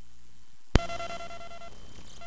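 A low steady hum and hiss, then a sharp click about three-quarters of a second in, followed by a steady electronic beep with a clear pitch lasting about a second.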